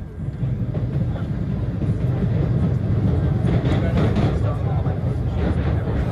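MBTA Red Line subway train running at speed, heard from inside the car: a steady low rumble of wheels on the rails that grows louder just after the start and then holds.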